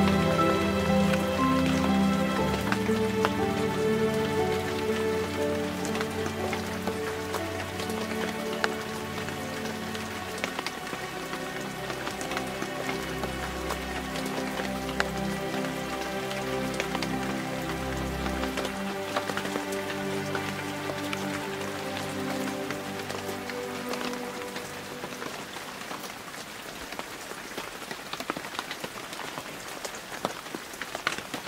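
Soft meditation music of long, held, layered notes, with low bass notes in the middle, over steady rain; the music fades out gradually, leaving the rain and its scattered drop ticks.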